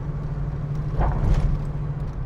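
A 1975 AMC Hornet's 304 cubic-inch V8 running steadily as the car cruises, heard from inside the cabin as a low rumble.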